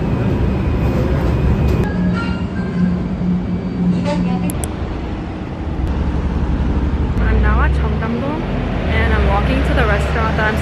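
Subway train running, heard from inside the carriage: a dense rumble with a steady low motor hum. About halfway through it gives way to city street traffic noise with nearby voices.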